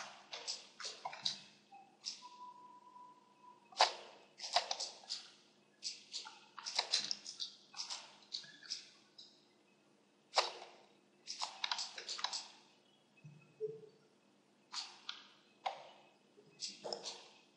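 Computer mouse clicks and scroll-wheel ticks in short irregular clusters, over a faint steady computer hum. A faint held tone sounds briefly about two seconds in.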